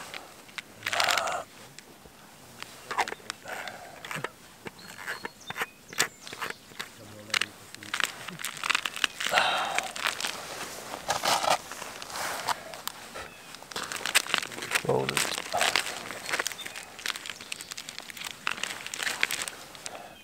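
Gloved hands handling a foil-wrapped insulated bottle and a cooking pot: irregular crinkling of the foil sleeve and rustling of jacket fabric, with scattered clicks and knocks.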